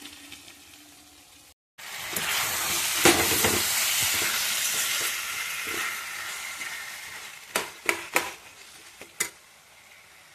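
Spiced amla pieces sizzling in hot oil in a steel pan as they are stirred. The sizzle starts suddenly about two seconds in and slowly fades. Near the end a steel spoon clicks sharply against the pan a few times.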